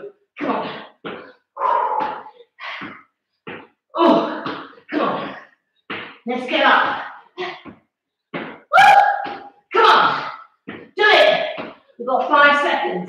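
A woman's voice in short, effortful bursts about once a second: exertion grunts and forced exhalations during burpees.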